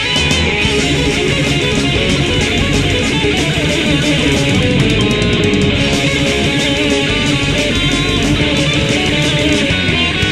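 Heavy metal band playing from a 1997 demo recording: distorted electric guitars over bass and drums, with no singing heard.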